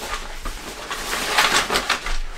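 Rustling of a fabric drawstring bag as a hand rummages inside it and pulls out a toy, with a quick run of louder rustles in the second half.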